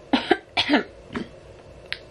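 A woman coughing a few times into her hand and clearing her throat: two short coughs, then a longer, throatier one, with a weaker one about a second in. Her throat is rough from having just eaten.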